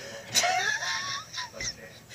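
A man laughing quietly under his breath, with a rising high-pitched squeak in the middle.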